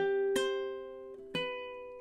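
Ukulele in high-G tuning played fingerstyle, single melody notes plucked one at a time. A new note sounds about a third of a second in and another just over a second in, each ringing on and fading under the next.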